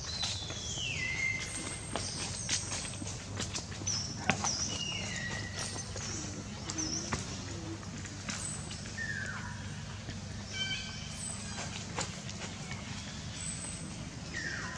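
Animal calls in the trees: several high, whistle-like calls that each slide down in pitch and end on a brief held note, spaced a few seconds apart, over scattered clicks and a steady low hum.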